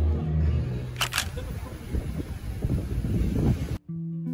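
Background music fades out in the first half second, leaving a background haze with low rumbling. A sharp double click sounds about a second in, and the sound cuts out abruptly just before the end.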